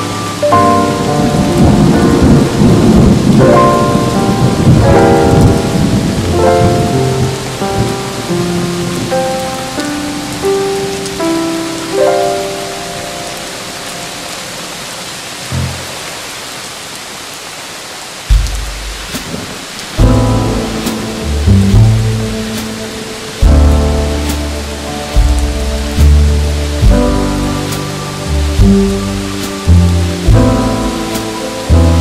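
Steady rain with a long roll of thunder in the first few seconds, under slow, soft jazz. The music thins out in the middle, then low bass notes come back in with the melody about two-thirds of the way through.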